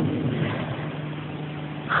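Steady low hum with hiss: the background of the room and an old, band-limited recording during a pause in speech.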